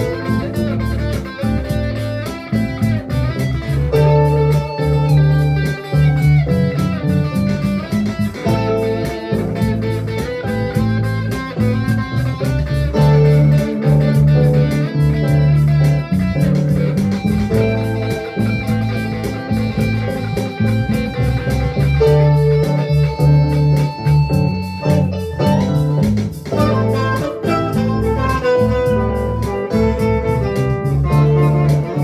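Electric guitar played through an amplifier: a continuous instrumental passage of picked single notes and chords, without singing.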